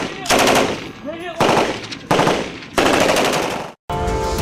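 M249 squad automatic weapon firing four short bursts of automatic fire, each lasting about half a second to a second; the last burst cuts off suddenly just before the end.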